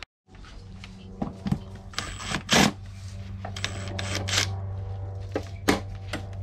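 Hand ratchet and metal tools clicking and clinking on the steel brake-line fittings of a brake proportioning valve: a few sharp clicks, with a longer rattle about two and a half seconds in, over a steady low hum.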